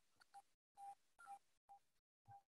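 Near silence: room tone with a few very faint, short blips about half a second apart.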